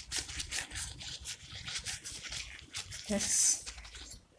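Rubber-gloved hands kneading and rounding a ball of bread dough in a glass bowl: irregular squishing and rubbing strokes, with a short vocal sound about three seconds in.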